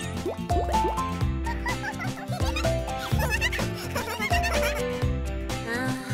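Cartoon background music with a steady, regular bass beat, with short, squeaky, wordless character voice sounds over it.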